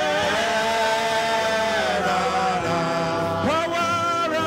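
A church congregation singing a worship song together, holding long notes with a wavering pitch. About three and a half seconds in, a new phrase slides up into place.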